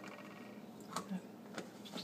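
Plastic cap being twisted onto a squeeze bottle: faint handling with a few sharp clicks, the loudest about halfway through and two more near the end.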